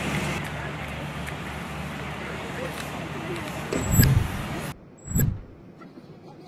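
A vehicle engine running steadily under outdoor street noise and faint voices, with a loud low thump about four seconds in. The sound cuts off suddenly a little later, and another low thump follows.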